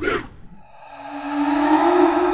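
Electronic music sting: a quick downward swoosh, then a held synth chord that swells steadily louder.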